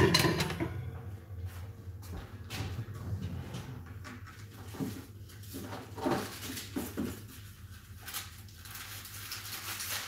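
Kitchen handling sounds. A metal wire cooling rack clatters on the counter at the start, then scattered light knocks and rustles follow as a kitchen drawer is opened and searched for a roll of baking paper, over a low steady hum.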